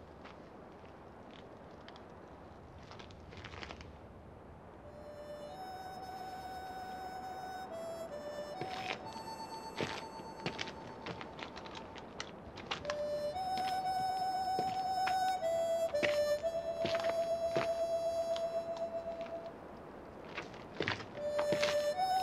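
Harmonica in the film score playing a slow tune of long held notes, coming in about five seconds in and growing louder later, over scattered knocks and thuds.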